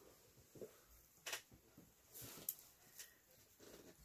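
Near silence, with a few faint, short taps and rustles of hands handling things.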